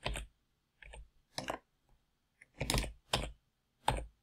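Computer keyboard keys being pressed in about half a dozen short, separate bursts of clicks with quiet gaps between them, as code is copied and edits undone.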